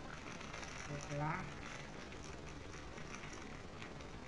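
Clear plastic food wrapper crinkling faintly as it is handled, a fine run of small crackles with a few sharper clicks near the end. A short vocal sound comes about a second in.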